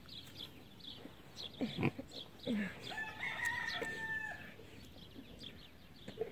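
A rooster crows once, a held call about halfway through, after a few short low calls; faint small-bird chirps throughout.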